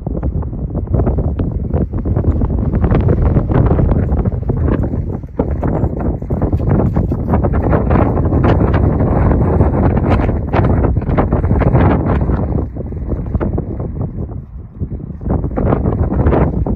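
Strong wind buffeting the microphone, a loud rumbling rush that gusts and lulls, easing for a few seconds near the end.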